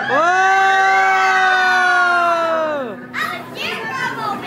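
Children letting out one long, loud shout together, held for about three seconds with a sharp start and a drop at the end, followed by scattered children's voices.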